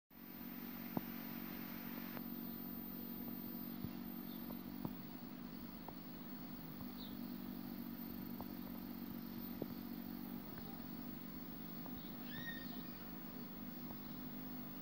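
Faint, steady low buzz with hiss from a CRT television playing the noisy, picture-less opening of a VHS tape, with a few scattered faint clicks. A few short, faint high chirps sound near the end.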